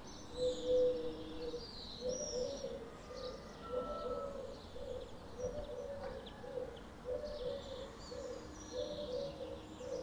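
A dove cooing in a steady run of low, repeated phrases, with high chirping and twittering of swallows and other small birds above it.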